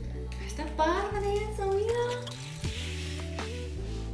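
Background music with sustained low bass notes that shift every second or so, with a brief voice sound about a second in.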